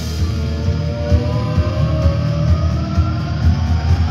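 A hard rock band playing live, loud: drums and bass pulsing steadily underneath a held note that slowly rises in pitch across the passage.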